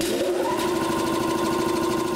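An air compressor's electric motor and cooling fan starting up: a whine that rises in pitch over about half a second, then settles into steady running.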